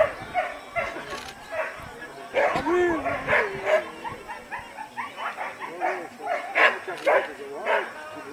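A dog barking and yipping in short, repeated calls while it runs an agility course.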